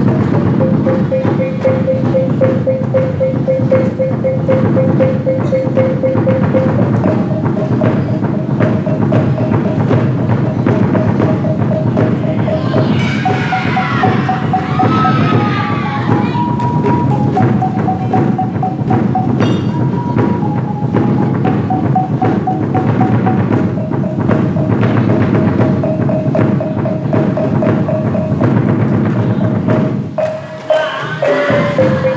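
Traditional gendang silat accompaniment: drums beaten in a fast, steady rhythm under a reedy serunai melody that holds long notes and steps from pitch to pitch, with a brief higher, gliding flourish around the middle.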